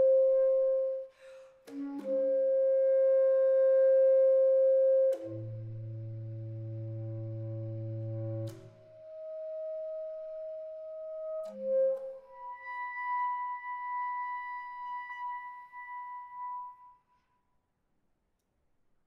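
Solo bass clarinet playing sustained notes of a contemporary piece. A loud held high note breaks off briefly and resumes, then gives way to a quieter low note, a soft middle note and a long, quiet high note that fades out near the end.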